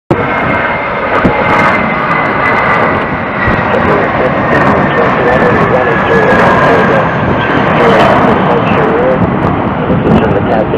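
Airbus A320-200's IAE V2500 turbofans at takeoff thrust as it climbs out: a loud, steady rumble with a whine that slowly falls in pitch.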